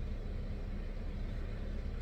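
Steady low hum and rumble inside a stationary car's cabin, with a faint constant tone under it.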